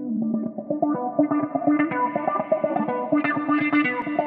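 Background music with a quick, even run of repeated notes over steady held tones.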